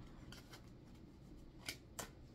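Tarot cards being handled and drawn from the deck: a few faint short card clicks, the two clearest near the end.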